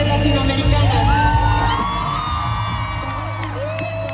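Live band music with brass and keyboard, with audience members whooping and cheering over it; the music grows gradually quieter.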